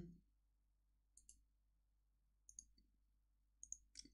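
Near silence with a few faint, sharp clicks: one about a second in, a pair midway, and a quick cluster near the end.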